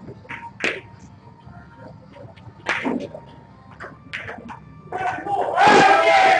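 Snooker balls clicking sharply as the cue ball is struck and hits the object balls. Voices in the room, loudest near the end.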